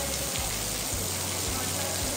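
Heavy tropical rain pouring hard onto wet pavement, a steady even hiss, with background music underneath.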